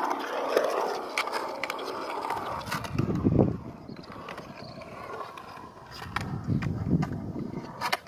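Skateboard wheels rolling on concrete, a rough rumble that swells twice as the rider carves through the bowl, with scattered sharp clicks.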